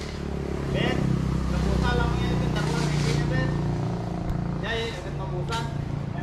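A motor vehicle's engine running, a steady low hum that grows louder over the first seconds and fades after about four seconds, as of a vehicle passing or pulling away.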